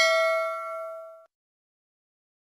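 Bell-like ding of a notification-bell sound effect, its several tones ringing out and fading, then cut off suddenly a little over a second in.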